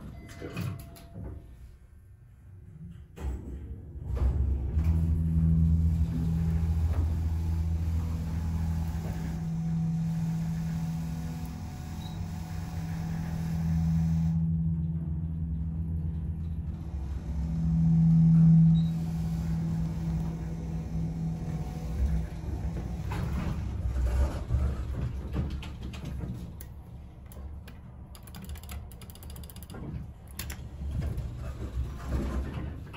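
1973 Dover hydraulic elevator running up one floor: about four seconds in its hydraulic pump motor starts with a steady low hum, which swells briefly a little past halfway. It eases off about three quarters of the way through as the car slows and stops, followed by a few clicks near the end.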